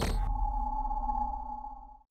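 Logo-intro sound effect: a sharp hit at the start, then a ringing tone made of several pitches over a deep rumble, fading away over about two seconds.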